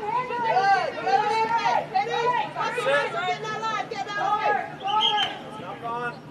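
Several high-pitched girls' voices shouting and calling out over one another, with no clear words, over a faint steady low hum.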